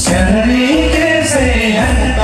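Male voices singing a Tamang selo song into microphones over amplified instrumental accompaniment, the sung line rising and then falling back.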